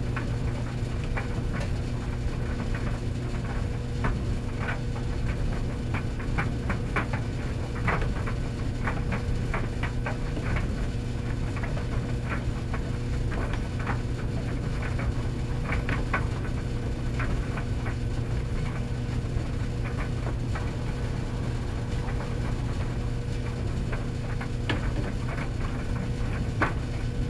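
Commercial stacked tumble dryers running: a steady motor and fan hum with a low rumble, and frequent irregular light clicks and taps from the load tumbling in the drum.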